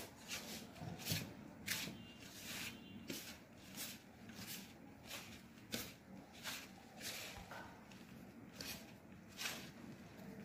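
Hands squeezing and mixing crumbly wheat-flour dough with chopped radish leaves and mustard oil in a steel plate: faint, soft scrunching and rustling with each grab, a little more than once a second.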